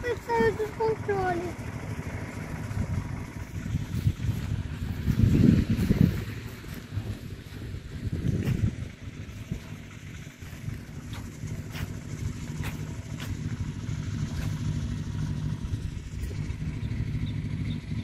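Gusty wind rumbling on the microphone, strongest in a swell about five seconds in, over a steady low engine drone that carries on through the second half.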